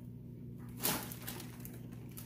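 A plastic bag rustling briefly as it is picked up, about a second in, over a steady low hum.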